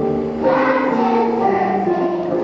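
Children's choir singing together, a new sung phrase beginning about half a second in.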